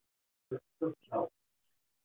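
Only a voice: three short, halting syllables or grunts, spaced over about a second, with quiet between them.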